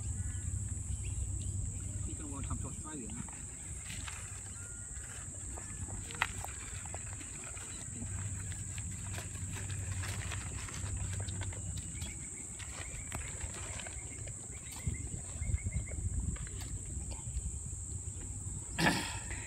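A kangaroo chewing and crunching food pellets taken from a hand, heard as a scatter of small irregular clicks. Under it runs a steady high-pitched insect drone, with faint voices in the background.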